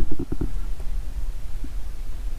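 Low rumble with a few soft knocks in the first half second: handling noise on a handheld microphone as it is moved along under the car.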